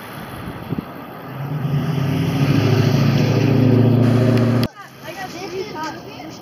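An engine running with a steady low hum, growing louder from about a second in and cutting off suddenly about four and a half seconds in.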